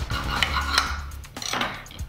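A table knife cutting through a rolled flour tortilla wrap, clicking and scraping against the plate beneath, over background music.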